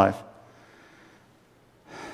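A man's last word trailing off, a pause of about a second and a half, then a quick intake of breath near the end before he speaks again.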